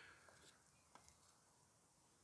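Near silence, with one faint tick about a second in.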